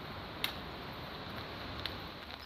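Two sharp clicks, a loud one about half a second in and a fainter one near the end, over a steady background hiss.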